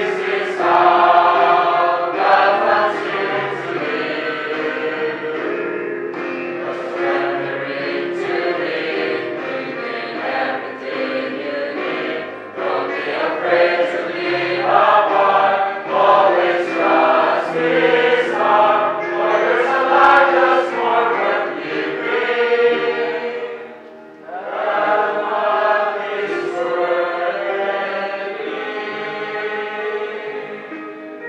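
A congregation singing a Christian hymn together, led by two singers on microphones, over an instrumental accompaniment, with a short break between lines about three-quarters of the way through.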